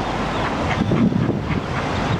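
Steady, fairly loud noise of wind on the microphone mixed with street traffic.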